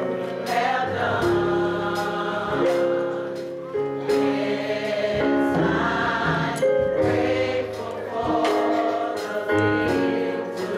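Gospel choir singing held chords in a slow song, over a regular beat of about one stroke a second.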